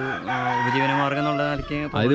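A caged country-breed rooster crowing once, a single long drawn-out call of about a second and a half that stops shortly before the end.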